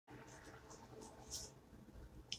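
Faint rustling and scratching of hair being gathered and tied back by hand: a few soft, short scratches over quiet room tone, the strongest a little over a second in.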